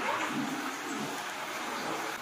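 Indistinct voices of several people talking in a room, with a light background hiss.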